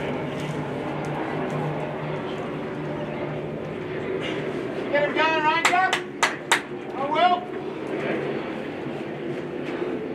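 Indistinct chatter of sideline spectators. About halfway through comes a loud wavering shout, then a few sharp claps, then another short shout a second later.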